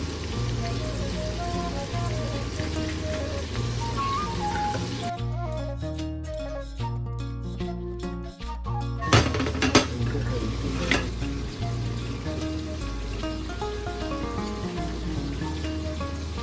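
Background music with a steady bass line over a continuous sizzle of food frying in oil, which drops out briefly about five seconds in. A few sharp clinks of cutlery on a ceramic plate come a little past the middle.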